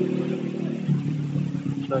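A motor vehicle engine running steadily at a low, even pitch.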